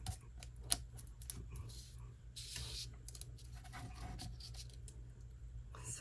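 Faint handling sounds of paper die-cut gears being rubbed with a fingertip and moved about on a craft mat: light clicks and taps, with one brief scraping rustle about halfway through, over a low steady hum.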